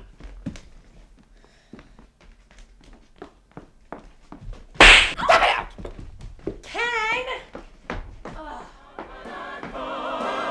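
A loud thump about five seconds in, followed a second or two later by a wavering, voice-like tone.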